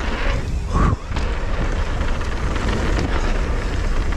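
Wind buffeting the microphone of a camera mounted on a mountain bike, with the rumble and clatter of the bike rolling fast down a dirt trail. There is a brief dip about a second in and a few sharp clicks later on.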